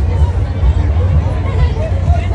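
Indistinct background chatter of voices over a steady low rumble, with no clear words.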